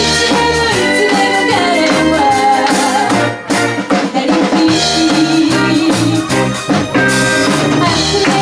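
Live band playing a 1970s Japanese pop song: a woman singing lead over electric guitar, electric bass, keyboard and drum kit. The band drops out briefly about three and a half seconds in, then comes back in.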